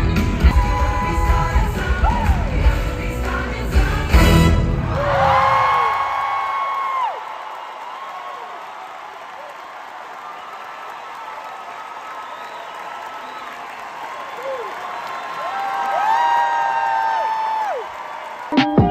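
Live theatre band music with a heavy beat and singing, which stops about four seconds in. Then a theatre audience cheers and applauds, with long high held voices rising over the crowd twice.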